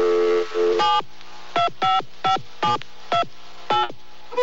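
Electronic radio-show intro jingle: a held chord that ends in a quick upward swoop, then six short electronic tones, each sweeping sharply downward in pitch, about half a second apart.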